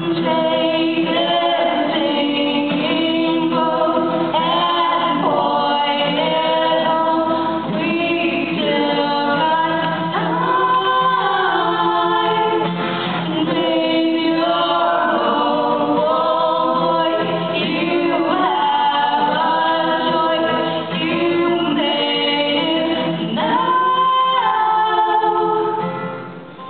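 Live singing with acoustic guitar accompaniment, a song performed through microphones.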